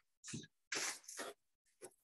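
Short rustling and scuffing noises, a few each second, from a person spinning on the spot with arms outstretched.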